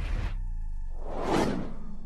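Logo-animation sound effect: a whoosh that swells and peaks about one and a half seconds in, over a low rumble and a few held high tones.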